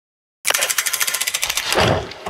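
Logo intro sound effect: a fast, even run of sharp clicks, about fifteen a second, starting about half a second in and swelling into a low surge near the end.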